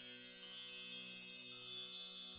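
Soft background music: a low sustained drone under shimmering, wind-chime-like ringing tones, with a new chime entering about half a second in.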